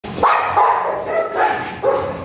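Dogs in kennel runs barking, about five barks one after another.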